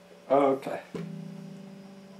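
A brief vocal sound without clear words, then, about a second in, a single pick on an electric guitar's strings whose note rings on and slowly fades.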